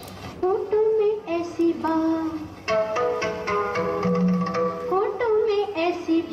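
A song with a woman's singing voice over instrumental accompaniment, with long held notes.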